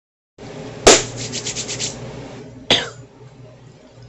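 Handling noise from a phone being held and positioned: a sharp knock just before a second in, then a quick run of rubbing strokes, and another brief sound about three-quarters of the way through.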